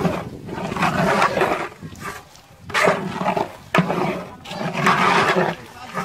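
A long metal ladle scrapes and churns through diced potatoes in a large aluminium pot, in three long stirring strokes with short pauses between them.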